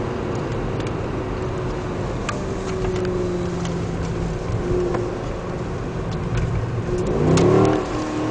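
Mercedes CLS 63 AMG's V8 heard from inside the cabin, running steadily under road noise through a corner. Near the end it revs up with a rising pitch as the car accelerates out, and this is the loudest part, with the tyres gripping as the power goes down.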